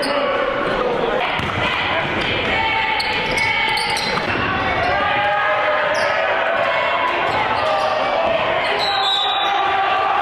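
A basketball bouncing on a hardwood gym floor during a game, amid steady, indistinct voices of players and spectators.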